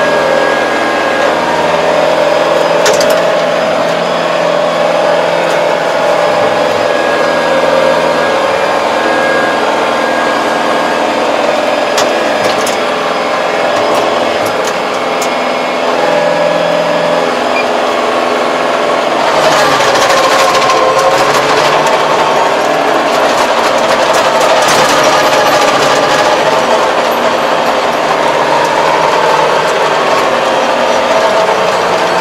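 MZ775 tractor's engine and drivetrain running steadily, heard from inside the cab. About two-thirds of the way in the sound turns louder and more clattery.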